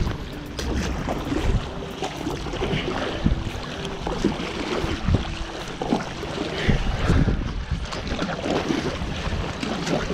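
Paddle strokes splashing and water rushing along the hull of an inflatable stand-up paddle board paddled fast, with wind buffeting the microphone.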